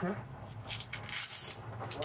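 Metal scraper being worked under a steam-softened vinyl floor tile, scraping and peeling it up off the old adhesive in a few short rasping strokes, over a steady low hum.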